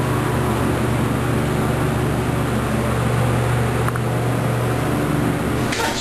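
Hydraulic elevator car travelling, a steady low hum throughout with a faint click about four seconds in; the hum's lowest part drops away near the end as the car arrives and the doors begin to open.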